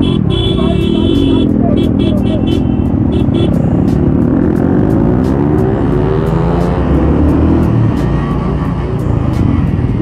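Many motorcycle and scooter engines running together in slow, crowded traffic, with a single-cylinder Royal Enfield Classic 350 close by. A horn sounds briefly at the start, and one engine revs up and back down over a few seconds in the middle.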